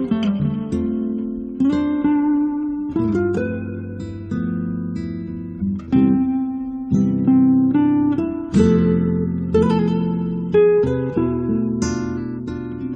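Acoustic guitar music: a plucked melody over ringing chords, with a fresh chord struck every second or two and left to die away.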